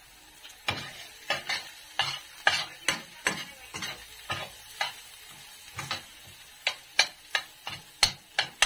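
A spoon stirring minced garlic in oil in a stainless steel frying pan: irregular taps and scrapes against the pan over a faint sizzle.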